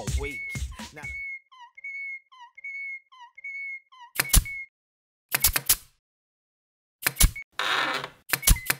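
Sound effects of an animated logo sting: music cuts off about a second in, then a string of short, squeaky whistle-like chirps, then a few sharp clacks and knocks, the loudest about four seconds in, and a brief hiss near the end.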